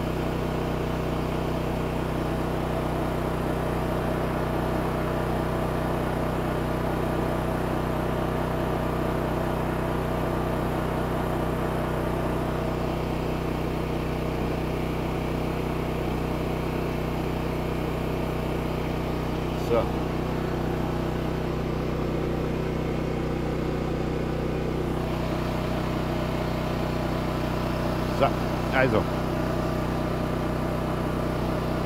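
Black + Decker BXGNi2200E petrol inverter generator running steadily at an even pitch under the load of charging a power station. A few brief clicks sound about two-thirds of the way in and near the end.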